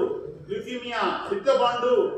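Speech only: a man lecturing.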